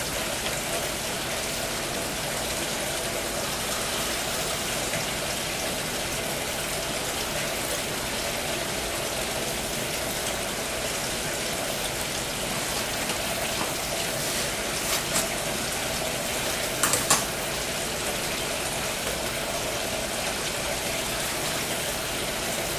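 Steady rushing background noise with a faint hum, like running water or plant machinery, with a few brief light clicks about two-thirds of the way through.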